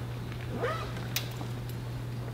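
Quiet hall room tone carried through the sound system, with a steady low electrical hum. A brief faint sound that glides up and down in pitch comes about half a second in, and a single sharp click a little after a second.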